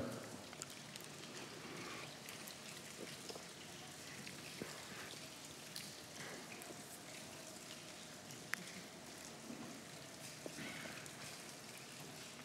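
Faint, scattered small clicks and crinkles of a congregation handling individual communion cups, with one sharper click about eight and a half seconds in.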